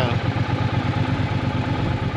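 Triumph Bonneville T120's 1200 cc parallel-twin engine idling steadily with a fine, even pulse.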